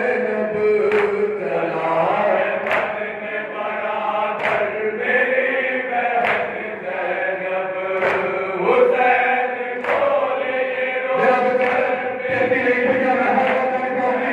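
Men's voices chanting a noha, with a crowd slapping their chests in unison (matam) about once every two seconds under the singing.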